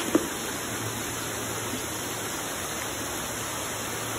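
Steady rushing and bubbling of water in rows of aerated fingerling-rearing tubs fed by PVC pipes, with two brief clicks right at the start.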